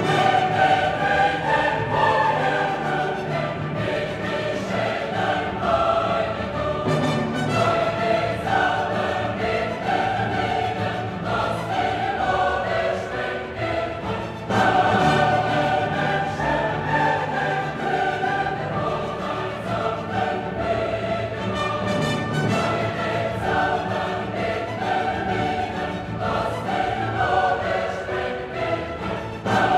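Classical choral music: a choir singing with an orchestra, with a louder phrase entering about halfway through.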